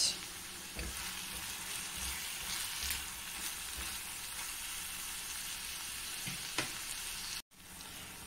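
Chopped coconut and onions sizzling steadily in oil in a kadai, with a few light taps and scrapes as a spatula stirs them. The sound drops out for a moment near the end.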